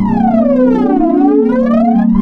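Ambient electronic music: a steady held synthesizer chord, with a pitched tone that glides down over the first second and back up by the end, like a slow siren.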